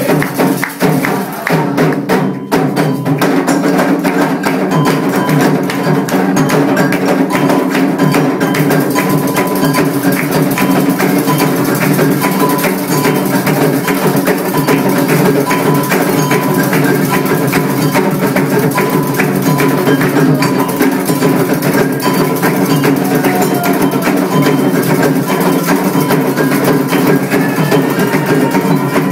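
Candomblé ritual drumming: atabaque hand drums playing a steady, fast rhythm with a struck metal bell keeping time.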